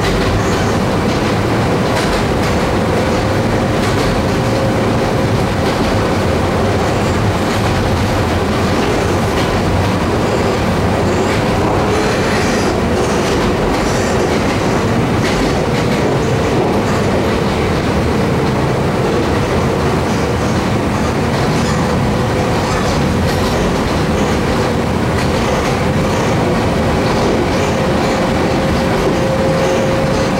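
Running noise heard inside a Kobe Electric Railway 1100 series passenger car under way: a steady loud rumble of wheels on rail with a faint even tone above it, and occasional clicks over rail joints.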